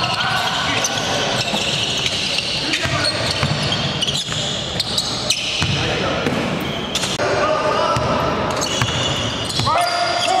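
Live game sound in an echoing gym: a basketball being dribbled on a hardwood court, with repeated short knocks, under the shouts and chatter of players and onlookers.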